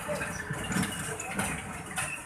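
Outdoor background noise: indistinct voices over a steady low rumble like a vehicle engine.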